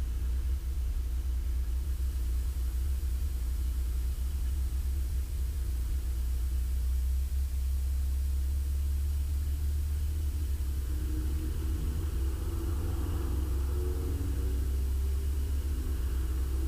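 Beechcraft Bonanza's six-cylinder piston engine running at low taxi power, heard in the cockpit as a steady low drone while the plane rolls onto the runway before takeoff power is set.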